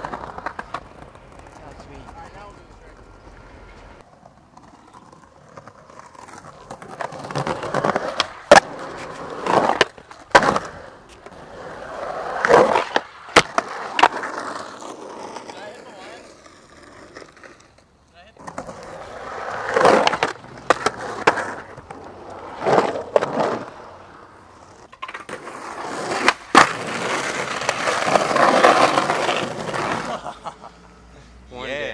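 Skateboard wheels rolling on concrete, the rolling noise swelling and fading several times as runs come and go. Sharp clacks of the board hitting the ground or an obstacle come several times, the loudest about halfway through and again near the end.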